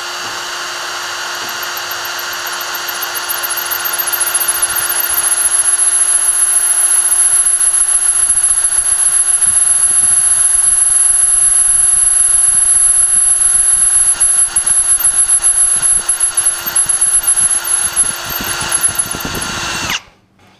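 Cordless hand drill turning a carbide annular cutter through a steel plate at low speed, the motor whining steadily under load with a high, steady whine from the cut. It grows louder over the first few seconds, turns uneven near the end and stops at the end.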